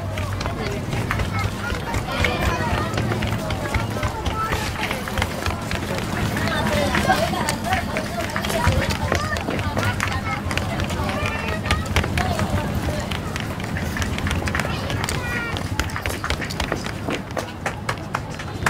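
Hurried running footsteps on a street in a dense, irregular patter, with scattered indistinct shouts and voices around them.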